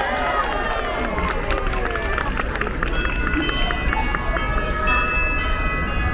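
Christmas parade music playing from loudspeakers over the chatter of a large crowd: a voice line trails off in the first second, then high held notes, starting and stopping, run through the rest.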